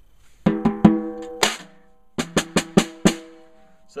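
A Ludwig Black Beauty 14x5 brass snare drum is struck: four hits, a short pause, then five quicker hits. Each hit rings on with a clear pitch, letting the snare-wire setting on its strainer be heard.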